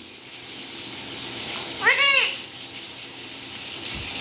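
Alexandrine parakeet giving a single short call about two seconds in, its pitch rising and then falling, over a steady background hiss.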